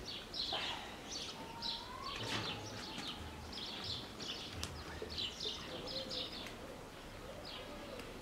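Small birds chirping repeatedly in short, high notes, with an occasional faint click.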